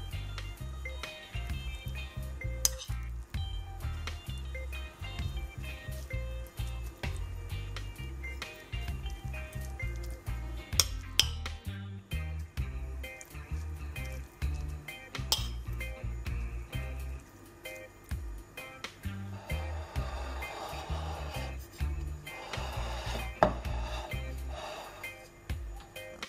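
A metal spoon clinks and scrapes now and then against a ceramic plate and bowl as a wet herb dressing is spooned onto baked eggplant halves. Background music with a steady beat plays throughout.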